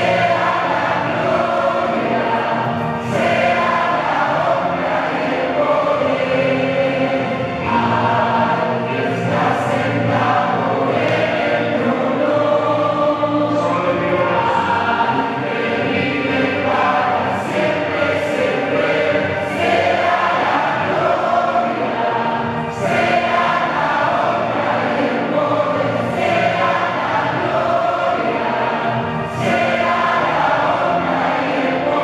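A large congregation singing a worship hymn together.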